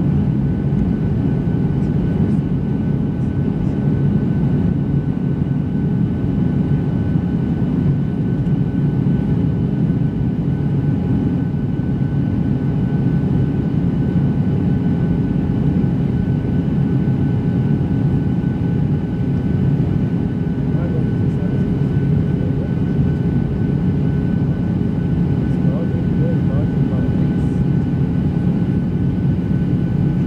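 Steady cabin noise of a Boeing 737-600 heard from a window seat beside its CFM56 turbofan engine: a loud, low rush of engine and airflow with several steady whining tones above it.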